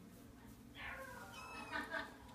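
Four-month-old kitten meowing: two short, high-pitched meows in the second half, the second louder than the first.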